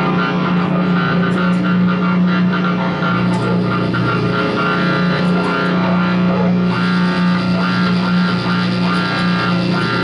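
Electric guitars and electronics played as an experimental drone: one loud low note held throughout, a second, lower note joining about three seconds in, under a shifting layer of processed, noisy upper textures.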